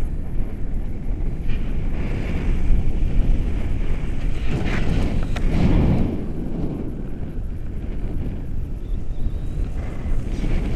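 Wind noise from the airflow of a paraglider in flight, buffeting the camera's microphone as a steady low rush. It swells for a moment in the middle.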